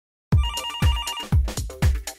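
Electronic intro theme music with a steady kick-drum beat, about two beats a second, starting about a third of a second in. In the first second a rapidly pulsed two-note tone like a telephone ringtone trills over the beat.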